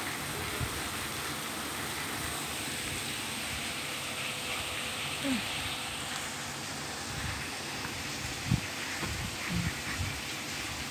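Steady background hiss, with a couple of brief soft low bumps near the end.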